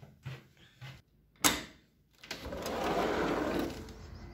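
A door latch clicks, then a sliding patio door rolls open along its track for about a second and a half.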